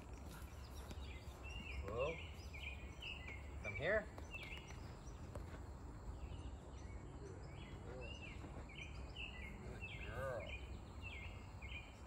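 Outdoor ambience carrying a steady series of short, high-pitched chirps, about two a second, from a bird or insect, over a low background rumble. A few brief voice sounds stand out, the loudest about four seconds in.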